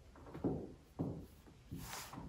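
Cowboy boots stepping on a hardwood floor: three soft steps, a little over half a second apart.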